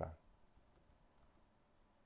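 Faint, scattered clicks of a computer keyboard being typed on: a few separate keystrokes.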